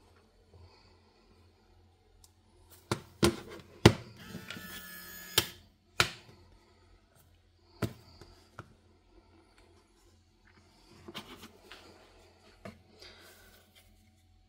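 Handling noise as a folding phone in a magnetic case is pulled off a plastic wireless charging stand and set down on a hard counter: a run of sharp knocks and taps, the loudest around four seconds in, with a short rattling buzz just after it.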